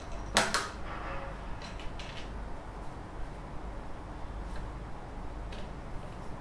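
Handling clicks and knocks from a handheld gimbal stabilizer and the small action camera being fitted to it. There is a sharp double knock about half a second in, then a few faint ticks.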